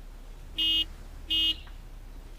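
A vehicle horn honks twice: two short, identical beeps about three-quarters of a second apart.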